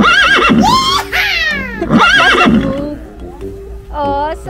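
A horse whinnying twice, about two seconds apart: each call starts with a quavering high neigh and falls away in a long descending glide. The two calls match closely, like a recording played twice.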